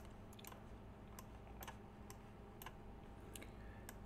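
Faint computer mouse clicks, about eight of them at irregular intervals, over a low steady hum.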